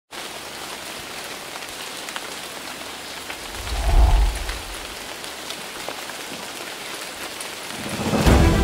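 Steady rain falling, with scattered drops ticking. A low rumble swells and fades about four seconds in.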